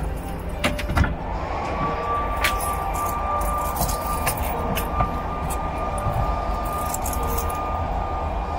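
Steady low rumble of a car's cabin noise, with scattered light clicks. About a second in, a single high tone slides in and holds.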